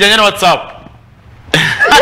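A person's voice drawn out until about half a second in, then after a short pause a short cough about one and a half seconds in.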